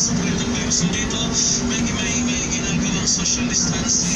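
Music with a singing voice playing inside a bus, over the steady low hum of the bus's idling engine.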